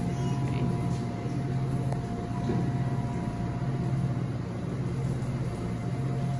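A steady low mechanical hum with a faint, thin, steady whine over it, and a second, higher whine for the first couple of seconds.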